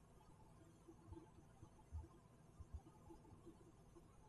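Near silence: room tone, with a few faint low bumps.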